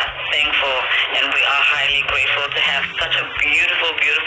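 A person's voice, narrow and tinny as from a phone recording, with words the recogniser did not catch. Low stepped tones run underneath, like a backing bass line.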